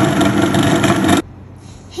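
Food processor motor running with its blade churning shortbread dough (flour, butter, sugar and water) as the mixture comes together into a dough, then switched off suddenly a little over a second in.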